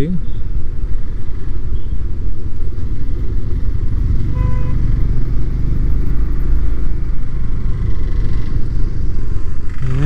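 Triumph Speed 400's single-cylinder engine running at steady cruising speed, heard from the rider's seat under a heavy, steady rumble of wind on the microphone.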